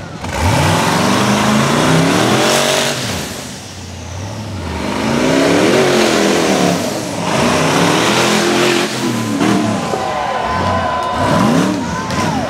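Rock bouncer's engine revving hard under full throttle on a steep hill climb, its pitch climbing and falling with each stab of the throttle. It eases off briefly about four seconds in, then revs again, with quick up-and-down blips near the end.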